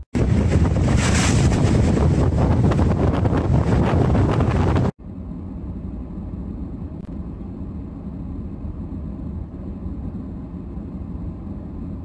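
Strong wind buffeting the microphone over storm surf washing across a flooded waterfront, loud for about five seconds. It then drops suddenly to a quieter, steady rush of wind and breaking waves.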